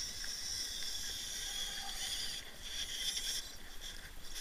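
Electric RC rock crawler's motor and gears whining thinly as it crawls over rocks, dropping out briefly a couple of times as the throttle is let off.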